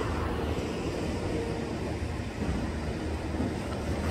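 Steady low rumble of a heavy engine running at an even pitch and level.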